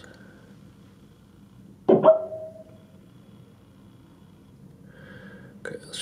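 A single short vocal burst from a man, about two seconds in, in a quiet room.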